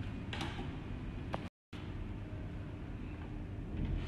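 Handling of a plastic soap dispenser on its metal stand bracket: two light clicks in the first second and a half over faint room noise, then the sound drops out completely for a moment.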